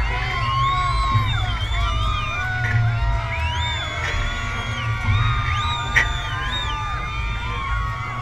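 Parade crowd yelling, whooping and cheering up at a float, many voices overlapping, with music playing underneath and a steady low rumble. A single sharp pop about six seconds in.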